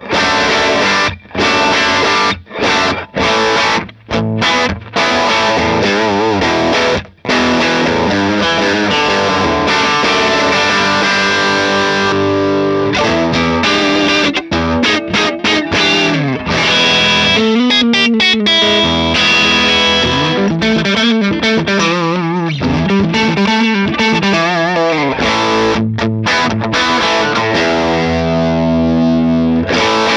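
Electric guitar played through a Divided by 13 FTR 37 tube amp with the treble turned up: rock riffs and chords. There are short stops in the first several seconds, then steady playing with bent, wavering notes in the middle, ending on a held chord.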